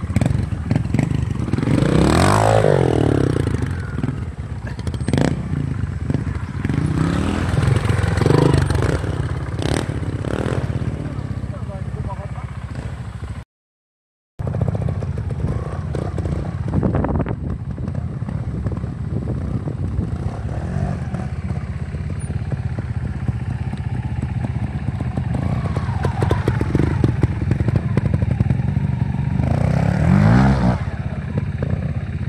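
Trials motorcycle engines running at low revs through slow dirt turns, with throttle blips whose note rises sharply about two seconds in and again at the end. The sound breaks off to silence for a moment near the middle.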